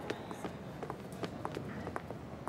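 Footsteps of several people, hard shoes and heels clicking on a hard floor, a few steps a second in an uneven rhythm.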